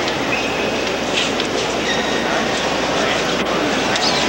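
Steady, indistinct murmur of a crowd of visitors echoing through the cathedral's stone interior, with no clear words.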